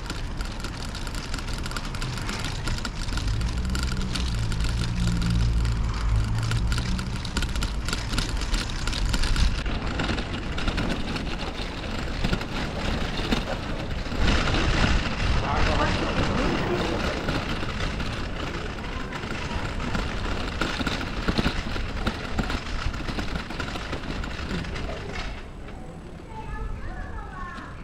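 Steady rolling noise of a bicycle ride over brick paving, picked up by the rider's camera. A car's engine rumbles close by for the first several seconds, and passers-by's voices come through briefly about halfway through.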